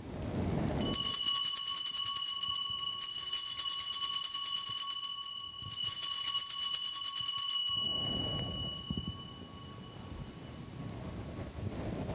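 Altar bells rung at the elevation of the chalice during the consecration: two long shaken peals of bright ringing, the second stopping about eight seconds in, with the ring fading away after it.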